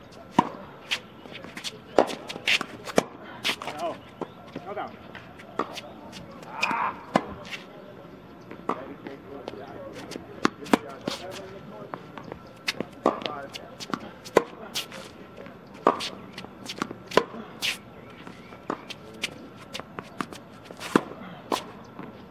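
Tennis balls struck with rackets and bouncing on a hard court, a sharp hit about every second. Some hits are loud and close, others fainter from across the court.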